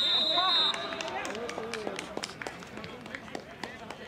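A referee's whistle blast that stops about half a second in, then men shouting on the pitch with scattered sharp knocks.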